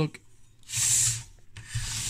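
Handling noise: two rubbing, scraping sounds as the opened oscilloscope and the camera are moved round to the other side of the circuit board. The first lasts under a second, starting about half a second in; the second starts near the end.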